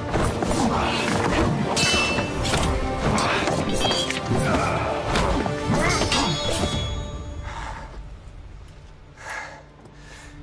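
Sword fight: steel blades clashing with short bright rings, mixed with thuds and men's grunts over dramatic film music. The clashing dies away over the last few seconds.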